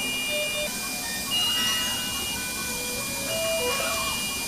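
Electronic alarm and beep tones from neonatal monitors and ventilators, several short tones at different pitches overlapping over a steady high-pitched tone.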